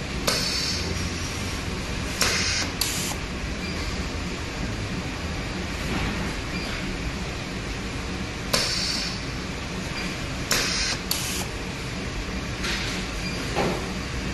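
Semi-automatic connector cable soldering machine at work: about eight short hissing bursts at irregular intervals over a steady low hum, as wires are soldered to the pins of a round military connector.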